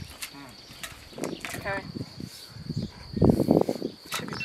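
Quiet, indistinct talk in short fragments, with a louder cluster of sound a little after three seconds.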